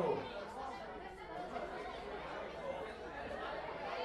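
Audience chatter: many voices talking at once, with no single speaker standing out.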